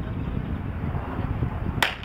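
A single sharp crack from a starter's pistol near the end, with a short echo after it, signalling the start of a 110 m hurdles heat. A steady low background noise runs under it.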